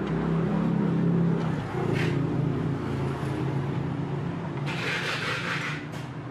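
A motor vehicle engine humming steadily in the background. It is loudest in the first two seconds and then eases off. A short scraping hiss comes about five seconds in.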